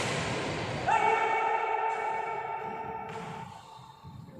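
A shuttlecock struck hard with a badminton racket at the start, then about a second in a man's long, drawn-out shout, held at a steady pitch for about two seconds before it stops.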